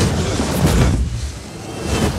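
An explosion in a forest floor of dead leaves: a loud blast with a deep rumble that peaks in the first second, eases off and swells again near the end.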